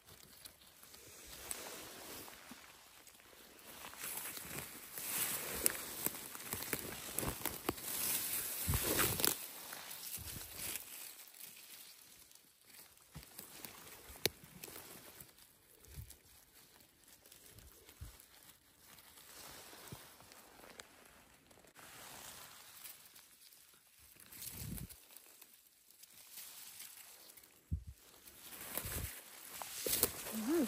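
Dry leaves, twigs and moss rustling and crackling as a gloved hand picks chanterelle mushrooms from the forest floor, with a louder stretch of rustling a few seconds in and a few soft low bumps later.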